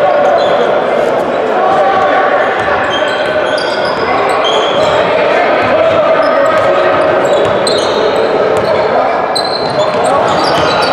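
Basketball being dribbled on a hardwood court during play, with short high squeaks from sneakers and indistinct shouting and chatter from players, benches and spectators, steady throughout in a reverberant gym.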